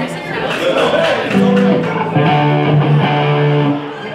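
Electric guitar through an amplifier playing a few single held notes, one after another, with voices in the room.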